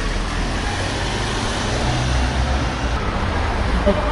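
Steady city street traffic noise: a low rumble of cars with no single event standing out.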